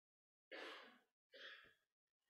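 Two breathy sighs from a man close to the microphone, the first about half a second in and the second about a second later.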